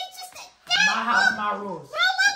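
A girl's drawn-out, nasal, wordless whine or groan that slowly falls in pitch, after a brief vocal sound and a short pause.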